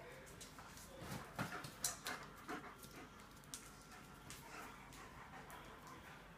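German shepherds panting, with a cluster of short, sharper sounds between about one and two and a half seconds in.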